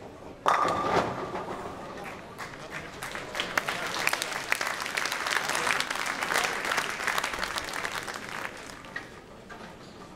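Bowling ball crashing into the tenpins about half a second in, with a short ring from the pins, followed by audience applause that builds for several seconds and fades out near the end.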